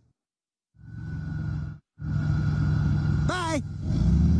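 Steady car engine and road noise heard inside a moving car's cabin, starting about a second in and dropping out briefly near the middle. A short vocal exclamation comes near the end.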